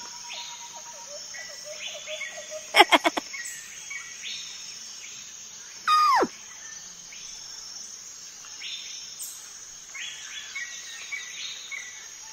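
Outdoor ambience of birds chirping over a steady hiss of insects, with a quick loud flurry of chirps about three seconds in and one short falling whistle about six seconds in.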